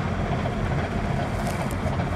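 Steady low drone of a pusher tug's diesel engines as it pushes a convoy of barges past.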